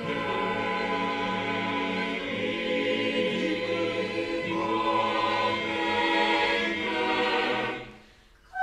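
Choir singing a cappella, holding full chords that shift every couple of seconds, then releasing the chord together just before the end.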